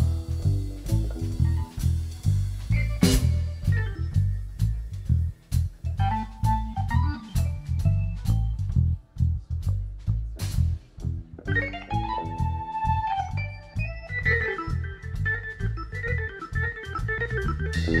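Keyboard solo with an organ sound, backed by bass guitar and drums. The line is sparse at first, then turns to held high notes and quick runs in the second half.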